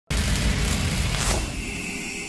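Intro logo sting: a sudden deep booming hit with a rush of noise, a brief whoosh a little past a second in, then a high ringing tone that slowly fades.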